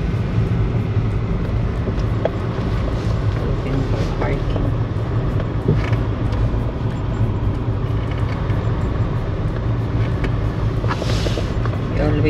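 Steady low rumble of a car's engine and tyres heard from inside the cabin while driving, with a few faint clicks and a short hiss near the end.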